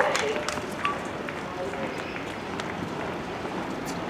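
Outdoor tennis-court ambience: a murmur of distant voices over a steady background haze, with a few faint taps scattered through it.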